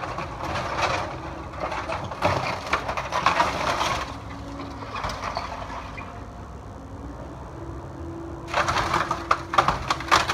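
Wooden framing of an old corn crib cracking and splintering as a Cat 308E2 mini excavator's bucket and thumb tear into it, over the steady hum of the excavator's engine. The crunching runs for the first four seconds, eases off to mostly engine hum, then comes back loudly about a second and a half before the end.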